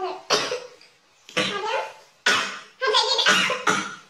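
A young woman coughing hard, about five harsh coughs in quick succession, breaking into laughter near the end.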